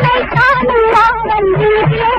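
Indian film song: a woman's high voice sings a wavering, drawn-out vocal line over repeated low drum beats.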